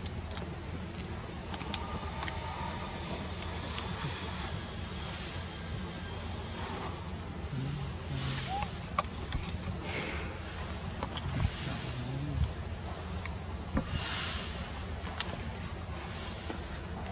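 Outdoor ambience: a steady low rumble with faint hiss that swells and fades a few times, and scattered small clicks.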